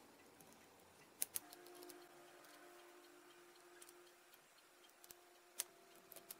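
Faint small clicks of a diode's bent wire leads being fitted into the holes of a printed circuit board. A close pair of clicks comes about a second in and a single sharper one near the end, over a faint steady hum.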